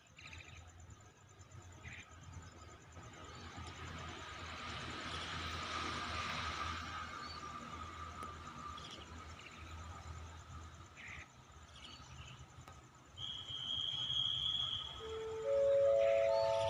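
Faint outdoor background noise with a low hum that swells to a peak about six seconds in and then fades. Near the end comes a short rising chime of several clear notes.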